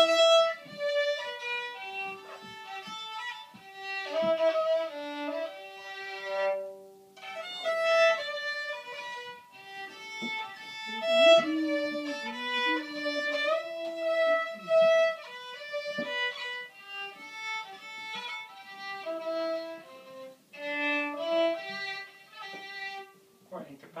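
A fiddle playing a tune, one note after another, with short breaks between phrases.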